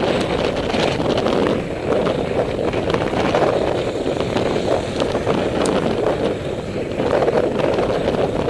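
Wind buffeting the microphone of a camera on a moving bicycle, with the rumble of tyres over a broken, potholed lane and a few small rattles.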